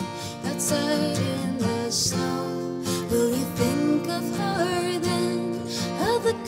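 A woman singing a slow melody with held notes, accompanied by acoustic guitars.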